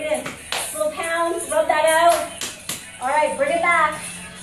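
A voice, talking or calling out, with a few sharp claps, one about half a second in and two or three more between two and three seconds in.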